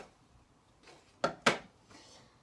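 Two quick, sharp knocks about a quarter second apart as things on a wooden bookshelf are handled.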